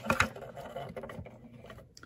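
Handling noise of a small electronics chassis and its circuit board: a few light clicks near the start, then faint rustling and scraping.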